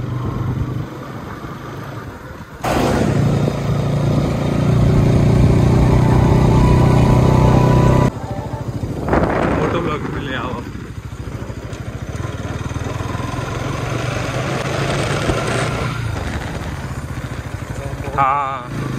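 Bajaj Pulsar NS200's single-cylinder engine running steadily as the bike rides along. The sound jumps abruptly louder about two and a half seconds in and drops back about eight seconds in.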